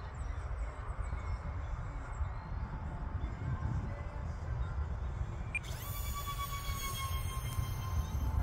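Wind rumbling on the microphone. About five and a half seconds in, the thin high whine of the E-flite UMX A-10's twin electric ducted fans comes in, sliding slowly down in pitch.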